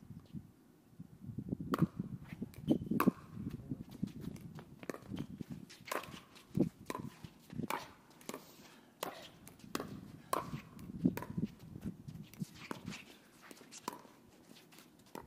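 Pickleball rally: paddles hitting a plastic pickleball in a run of sharp pocks, starting about two seconds in and coming irregularly, roughly one every half second to a second, with the ball bouncing and shoes moving on the hard court between the hits.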